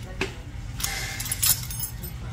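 Small metal nail-care instruments clinking and rattling as they are handled: a sharp click, then a second of jingling that peaks in one loud clink, over a steady low background rumble.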